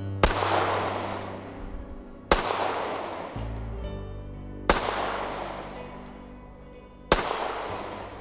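Colt All American 2000 9mm pistol fired four single shots, about two and a half seconds apart. Each sharp report is followed by a long fading echo.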